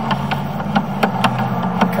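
A motor runs with a steady low hum, and light clicks repeat every quarter to half second.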